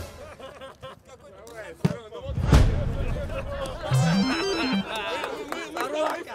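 Edited soundtrack of indistinct voices and chatter, with two sharp knocks about two seconds in and an electronic stepped tone that rises and falls about four seconds in.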